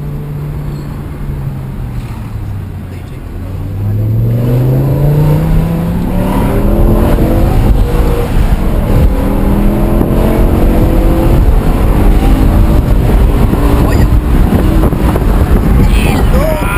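BMW M6's naturally aspirated 5.0-litre V10 under hard acceleration, heard from inside the cabin: the engine note runs low, then from about three seconds in climbs steeply and keeps rising again and again, staying loud.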